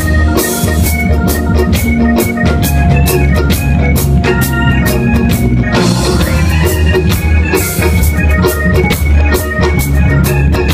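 Loud live band music: a heavy, steady bass guitar line and drum kit beat, with held organ-like keyboard chords and electric guitar over them.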